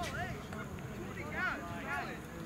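Distant shouting voices of players on a soccer field, calls rising and falling in pitch, loudest about one and a half seconds in, over a low outdoor rumble. A single sharp knock sounds right at the start.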